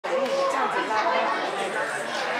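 Overlapping chatter of several people's voices, with no clear words.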